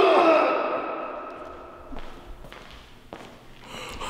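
A man's long pained groan, falling in pitch and fading over the first second or two: his reaction to a resistance band snapped hard across his bare back. A few faint knocks follow in the quieter stretch.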